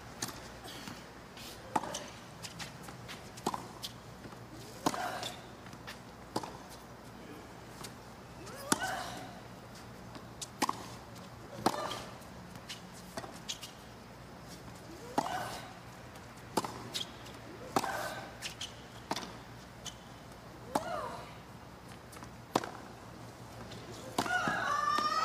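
Tennis rally on a hard court: racket strikes on the ball and ball bounces every second or so, with a player letting out a short grunt on several of the shots.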